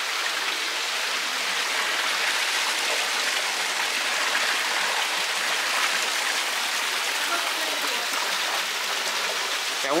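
Water cascading down an ornamental rockery into a koi pond: a steady, even rush of splashing water that does not let up.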